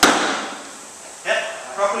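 A single sharp smack as a lifter lands a jump and catches a light, unloaded barbell at his shoulders, dying away over about half a second.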